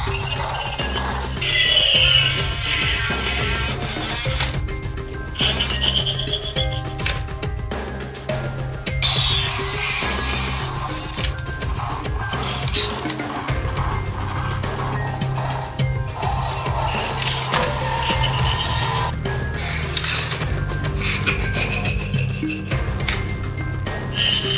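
Background music, with short high-pitched sound effects and clicks over it several times.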